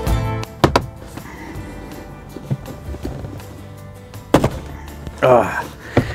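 Plastic retaining clips of a Toyota Tacoma's center console trim snapping loose as the panel is pried up by hand: two quick snaps about half a second in and a single louder one past four seconds, over background music.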